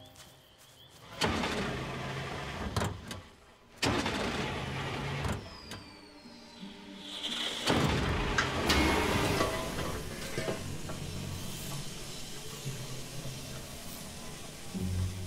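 Engine of an old canvas-topped four-by-four, coming on in several loud sudden surges and then running steadily.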